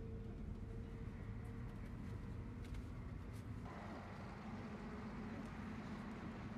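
Bus engine running steadily, heard from inside the cabin as a low rumble with a steady hum. A little over halfway through, a hiss joins in over the engine.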